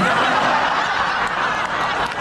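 Audience laughing together.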